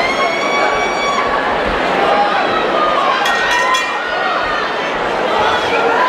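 Boxing ring's end-of-round signal: a steady high tone for about a second that cuts off suddenly, over the hall's crowd noise and shouting. A few sharp clinking strikes with a brief high tone follow about three seconds in.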